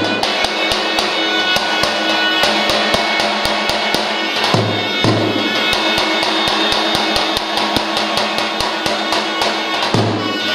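Albanian folk dance music: a lodra, the large double-headed drum, beaten in a fast, even rhythm of several strokes a second under a held melody, with one deep boom about halfway through.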